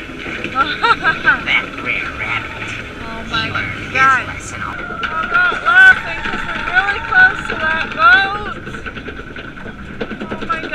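Voices whose pitch slides up and down, over a steady high tone.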